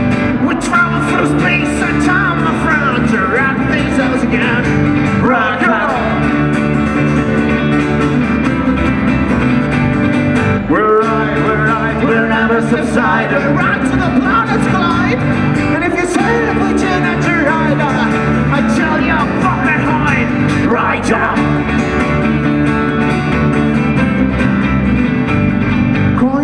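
Live rock band playing a loud, steady instrumental stretch on acoustic guitar, electric guitar and electric bass. A wavering, pitch-bending melody line runs over a steady low end.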